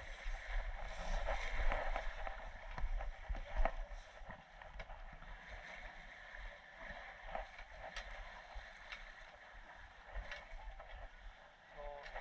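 Water rushing along the hull of a sailing yacht under way, with wind rumbling on the microphone; louder in the first few seconds, then softer.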